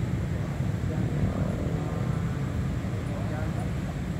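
A steady, uneven low rumble of outdoor noise, with faint distant voices in the second half.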